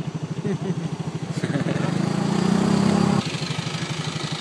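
A vehicle engine chugging at low speed with a fast, even pulse. A second engine's hum swells louder from about one second in and drops away near three seconds.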